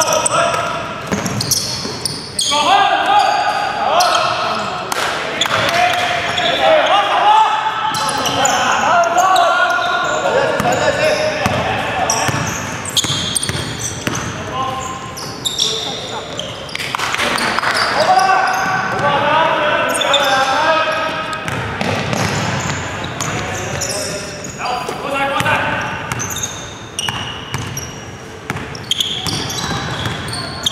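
Indoor basketball game: players' voices calling out over a basketball bouncing on the hardwood court, with sharp knocks scattered through, echoing in a large sports hall.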